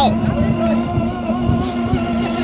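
Small electric motors and plastic gearboxes of a battery-powered ride-on toy car whining steadily as it drives across grass, with the rumble of its plastic wheels rolling over the lawn.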